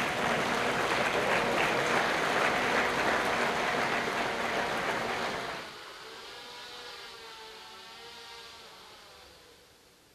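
Small quadcopter drone's rotors whining under a dense burst of audience applause. The applause stops about six seconds in, leaving the rotor whine on its own; its pitch wavers as the drone manoeuvres and fades away as it comes down to land.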